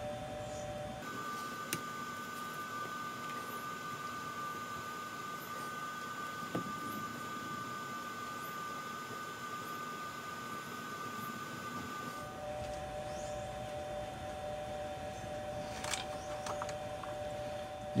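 Quiet workshop room tone: a faint steady hum with a few soft, isolated clicks.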